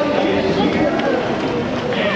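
Footfalls of a crowd of runners on pavement, mixed with many overlapping voices.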